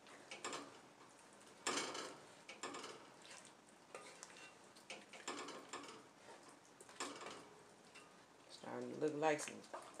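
Wooden spoon stirring thick bean chili in an enameled Dutch oven: a run of irregular, fairly quiet scraping strokes against the pot, roughly one every half second to second.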